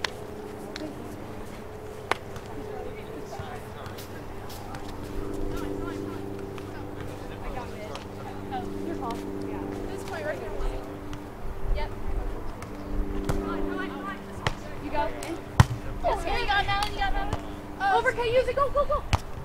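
Volleyball being struck by hand during a beach volleyball rally: a few sharp slaps, the loudest near the end. Players' voices calling come in over a steady low hum.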